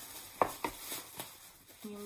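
Handling noise from unpacking a small gift box: a sharp tap about half a second in, a second one just after, then a few fainter clicks, with a woman starting to speak near the end.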